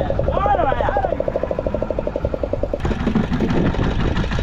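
A boat engine running with a fast, even beat over a low rumble, with brief voices in the first second. About three seconds in the sound changes abruptly to a different mix of engine noise and voices.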